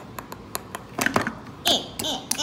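Light clicks and taps of plastic Lego toys being handled, about half a dozen in the first second or so, followed near the end by a short vocal sound from a child.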